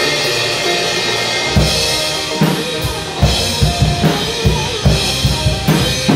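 Drum kit played along with a live rock band recording. For about the first second and a half the band holds sustained chords; then a run of bass drum and snare hits with cymbals comes in over the music.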